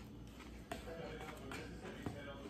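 Quiet eating sounds: a fork clicking against a plate a couple of times over a low room hum.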